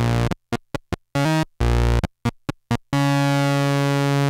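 Arturia MicroBrute monophonic analog synthesizer playing a run of short, detached notes on its sawtooth oscillator with the Ultrasaw brought in, then holding a single note from about three seconds in.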